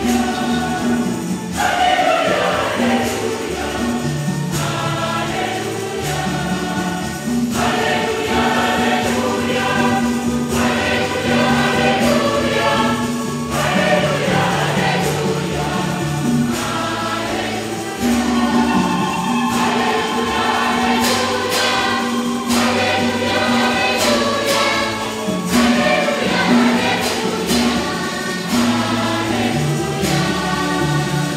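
Church choir singing a hymn in several voice parts over steady low held notes, with a few sharp percussive taps in the second half.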